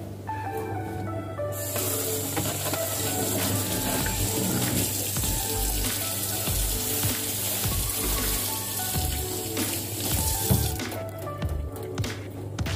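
Water running from a kitchen tap into a stainless steel sink as hands are rinsed under it, starting about a second and a half in and shut off shortly before the end. Background music plays throughout.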